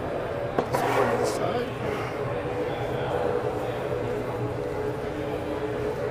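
Steady exhibition-hall background of distant voices and hum, with a few brief scrapes or clicks about a second in from body filler being mixed on a board.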